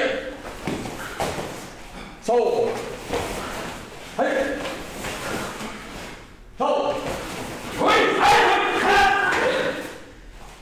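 Short vocal calls starting sharply about every two seconds in a large hall, then a longer, louder stretch of voice near the end.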